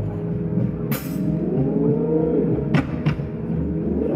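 Live funk band playing: sustained chords that bend up and down in pitch over a heavy low bass, with a short bright crash about a second in and two sharp hits near the end.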